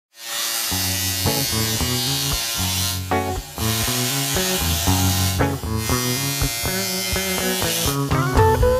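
Electric hair clippers buzzing steadily, cutting out briefly twice, over music with a bass line.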